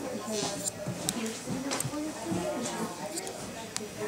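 Hair-cutting scissors snipping several times, short sharp clicks a second or so apart, as hair is cut scissor-over-comb. Quiet voices murmur underneath.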